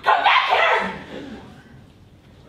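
A person's loud, sudden bark-like yelp that starts at once and fades away within about a second and a half.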